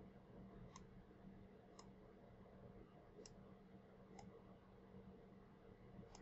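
Near silence with four faint computer mouse clicks spread about a second apart, over a faint steady hum.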